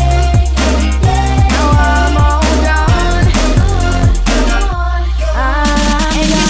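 Instrumental stretch of a club dance remix: a kick drum on about every half second over a steady bass and sustained synth chords, with no vocals. Near five seconds in the drums drop out briefly and the synth steps upward into the next section.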